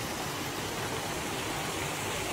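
Water running steadily down a small rock-lined garden cascade, an even rushing hiss.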